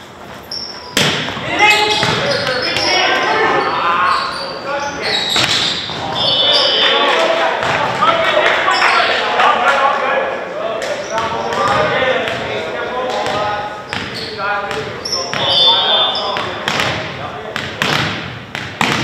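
Volleyball rally in a gymnasium: players shouting and calling to each other over repeated sharp smacks of the ball on hands and floor, with short high squeaks of shoes on the hardwood, all echoing in the hall.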